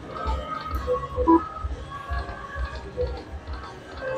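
Aristocrat Dragon Link Panda Magic slot machine playing its soft electronic reel-spin tones during a spin, with a few short beeps, over a low background rumble.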